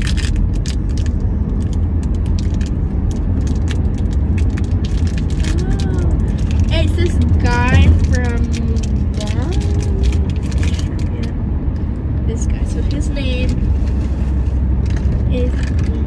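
Steady low rumble of road and engine noise inside a moving car's cabin, with quick crackling and clicking of toy packaging being handled and opened, most in the first few seconds and again near the end.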